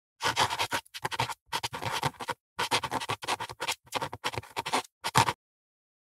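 A pen scratching across paper in quick writing strokes, in six short runs with brief pauses between, as of script being handwritten.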